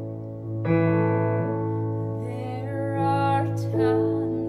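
Electronic keyboard playing a piano intro, a chord struck just under a second in and held. A woman's voice starts singing over it about halfway through.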